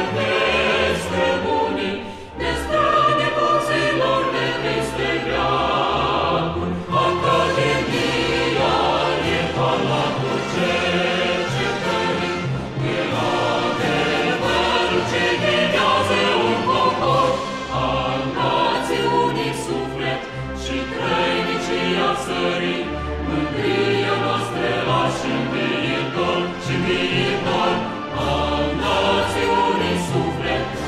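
Recorded choral song: a choir singing with instrumental accompaniment and sustained low bass notes.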